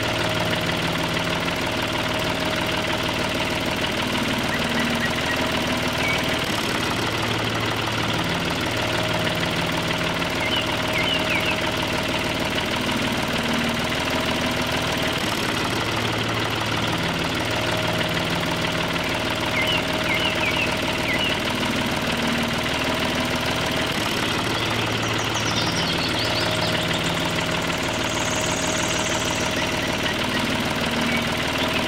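Engine running steadily, its sound going in a pattern that repeats about every eight to nine seconds, with a few faint high chirps over it.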